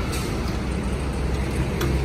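Kitagawa drill press's electric motor running steadily with a low, even hum, very smooth and quiet.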